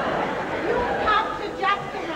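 Speech: stage actors talking, with several voices overlapping.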